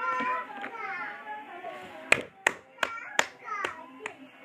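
Five hand claps, about 0.4 s apart, starting about two seconds in, after a stretch of voice-like tune.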